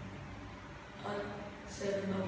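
Children's voices speaking briefly, a short utterance about a second in and another starting near the end, over a steady low room hum.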